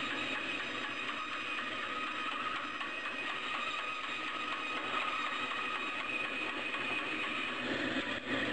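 Bandsaw running steadily, its blade cutting through the end of a walnut strip to free quarter-inch plugs, a steady machine noise with a faint whine.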